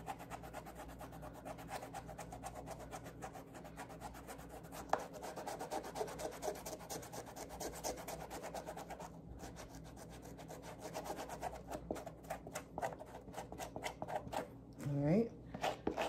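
Suede eraser block rubbed quickly back and forth over the suede upper of an Adidas Gazelle sneaker to scrub dirt out of the nap: a continuous fast, scratchy rubbing.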